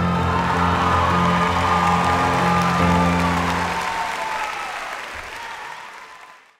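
Audience applause building over the last held piano chords of the song; the piano stops about three and a half seconds in and the applause then fades away.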